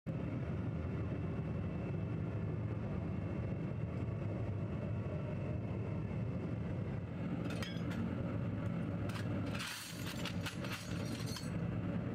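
Scrap metal motorcycle parts clinking and clattering as they are handled, starting about seven and a half seconds in and densest around ten seconds, over a steady low mechanical rumble from the workshop furnace area.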